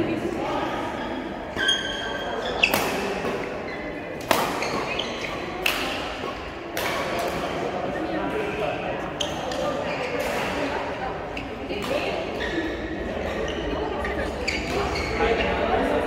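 Badminton rally in a large, echoing sports hall: rackets hitting the shuttlecock with sharp cracks every second or two, and short squeaks of shoes on the court floor. Voices murmur underneath.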